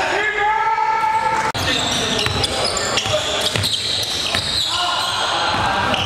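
Basketball bouncing on a gym floor during live play, with players' voices and calls echoing around the hall; one held call lasts about a second near the start.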